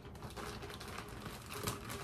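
Shower cap crinkling softly as it is pulled on and stretched over the hair.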